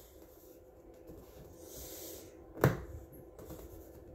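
Faint handling noise as a spiral-bound paper coloring book is picked up and moved: a soft rustle, then one sharp knock a little over halfway through.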